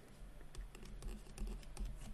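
Faint, irregular light taps and clicks of a stylus writing on a tablet screen.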